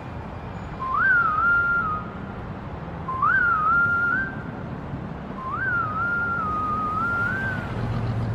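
A whistled tune in three short phrases, each leaping up, dipping slightly and settling on a held note, over a steady low rumble.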